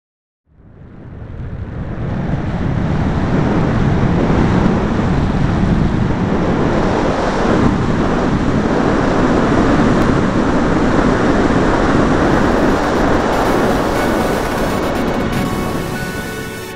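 A loud, steady rushing noise like surf, fading in over the first two seconds. Musical tones come in near the end.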